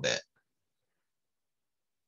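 A man's voice finishing a word, then silence that is completely dead, as if gated.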